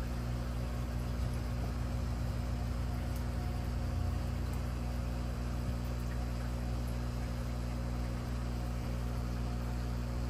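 Aquarium pump and filtration running with a steady low hum, unchanging throughout.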